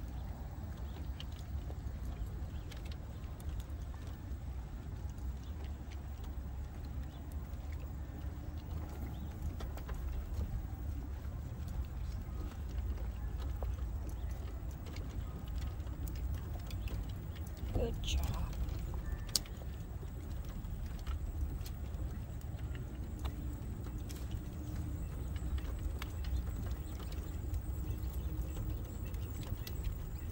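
Small scooter wheels rolling over the planks of a wooden footbridge: a steady low rumble with scattered light clicks and knocks, and one brief louder sound about two-thirds of the way through.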